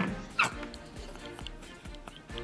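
Two people laughing hard, with a loud burst at the start and a short high cry about half a second in, then the laughter dies down under a steady background music bed.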